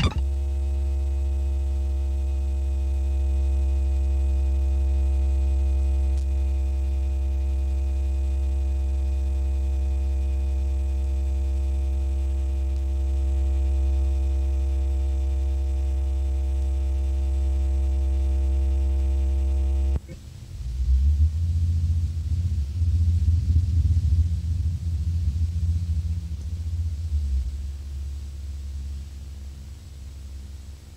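Electroacoustic music: a steady low electronic drone with many harmonics starts suddenly, holds for about twenty seconds and cuts off abruptly. A wavering low rumble follows and fades away.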